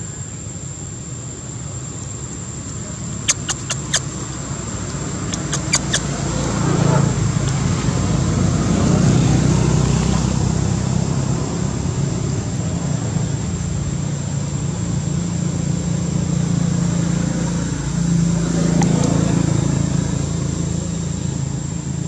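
A low outdoor rumble that swells twice, over a steady high-pitched tone, with a few sharp clicks a few seconds in.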